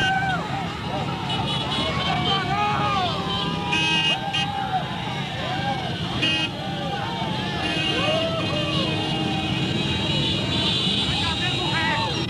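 Many motorcycles running together at low speed in a slow procession, with a crowd of voices shouting and calling out over the steady engine rumble.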